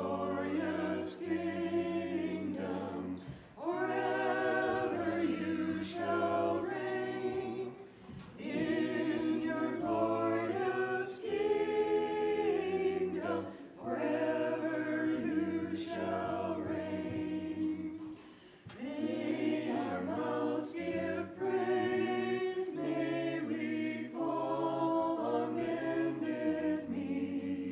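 Several voices singing Byzantine-rite liturgical chant a cappella, in phrases of a few seconds each separated by brief pauses.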